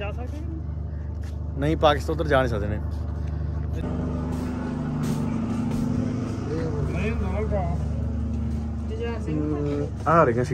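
A road vehicle's engine running steadily as a low hum, with people's voices breaking in briefly now and then.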